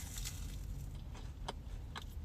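Quiet chewing of a flaky glazed toaster strudel, with a few faint clicks, over a steady low hum in a car cabin.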